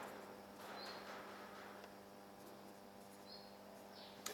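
Faint scratching of a felt-tip marker drawing on a whiteboard, with two brief high squeaks, one about half a second in and one near the end, over a steady low hum.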